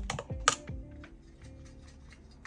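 A few sharp clicks and taps from a metal watercolour palette tin being handled and opened on the table, the loudest about half a second in, then fainter ticks. Background music fades out at the start.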